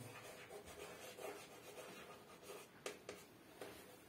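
Chalk writing on a green chalkboard: faint scratching strokes with a few light, sharp taps of the chalk.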